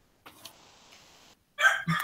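A rooster crowing loudly, starting about one and a half seconds in and still going at the end, after a faint hiss.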